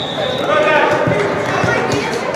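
Young players' voices calling in a large, echoing indoor football hall, with a few dull thuds of a football bouncing.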